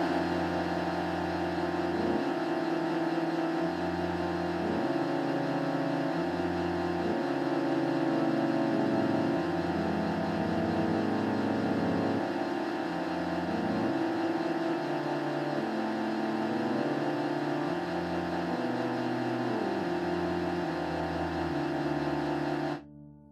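Instrumental music: a sustained high chord held over a bass line that steps to a new low note every second or two.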